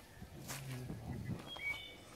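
A footstep on gravel about half a second in, a person's low voice briefly, then a few short whistled bird chirps near the end.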